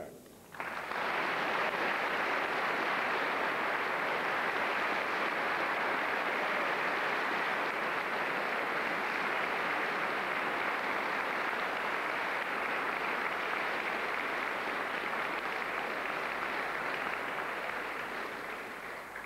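Studio audience applauding, starting about half a second in, holding steady and tailing off near the end.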